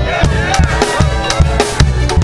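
Live studio band playing an upbeat number: a steady beat of drum hits over a walking bass guitar line.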